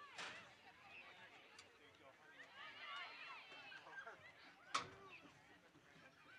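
Faint shouts of players calling on a soccer field, with two sharp thuds of a soccer ball being kicked: one just after the start and a louder one near the end.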